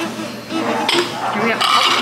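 A plate clinking and clattering against a table, with one sharp clink about a second in.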